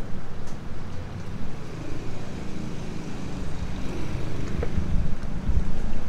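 Steady low rumble of street traffic, with wind buffeting the microphone, and a few faint knocks near the end.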